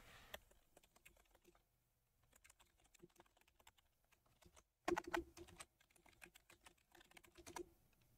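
Faint typing on a computer keyboard: a scattered run of key clicks, with a louder flurry about five seconds in and another about seven seconds in.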